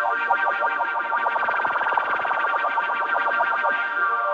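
A sustained sampled strings-and-choir chord from the SampleTron 2 virtual instrument, played through its phaser effect with the rate turned up, giving a fast, even fluttering sweep. Near the end the sweep stops and the chord holds steady.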